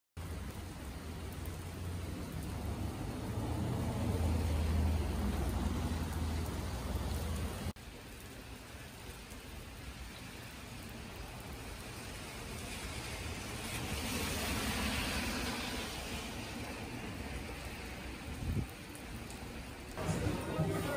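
Rainy city street ambience: a low traffic rumble for the first eight seconds, ending at a sudden cut. Then comes a steady hiss of light rain and wet road, swelling for a couple of seconds about three-quarters of the way through, with a short thump near the end.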